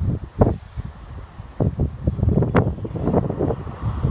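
Wind buffeting the microphone in uneven gusts, a low rushing noise that rises and falls throughout.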